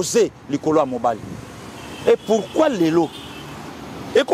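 A man speaking in short phrases with pauses, and a steady hum of road traffic underneath that is heard in the gaps.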